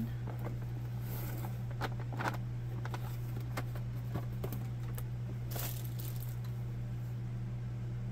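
Cardboard box and packaging rustling and crinkling, with scattered light clicks and scrapes, as a collector doll is unpacked by hand. A steady low electrical hum runs underneath.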